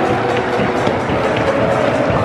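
Loud music over a stadium's loudspeakers, mixed with the noise of a large football crowd in the stands.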